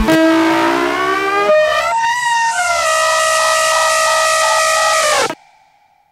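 Psytrance breakdown: the kick drum drops out, synth tones glide upward and settle into a held chord over a hiss of white noise. The chord bends down and cuts off about five seconds in, leaving a brief gap.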